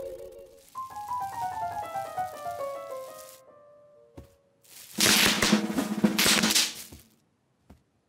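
A short run of musical notes stepping down in pitch, then about two seconds of rapid, loud popping as bubble wrap is stepped on and its bubbles burst in a quick crackling run.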